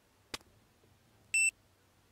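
A single sharp click, then about a second later one short, high electronic beep.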